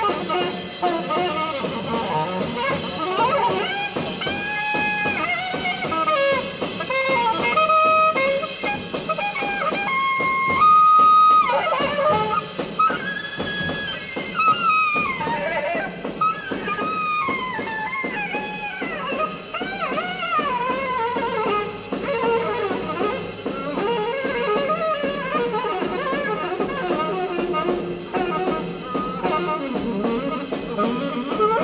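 Alto saxophone improvising a solo of quick runs, bent notes and a few held notes over a band's backing, in a live concert recording.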